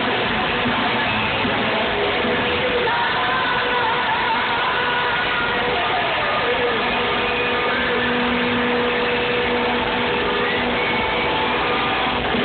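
A rock band playing live in an arena, heard from the crowd as a loud, steady, dense wash of sound with held and wavering notes sliding through it.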